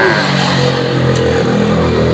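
A motor vehicle's engine running steadily with a low hum, slightly louder near the end.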